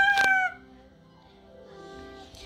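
A young child's high-pitched, drawn-out vocal squeal, sliding slightly down in pitch and breaking off about half a second in. After it, only faint steady tones remain.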